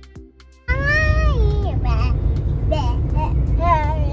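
Soft background music briefly, then a sudden cut to the inside of a moving car: a steady low road rumble with a small child's high, drawn-out wordless calls that slide up and down in pitch.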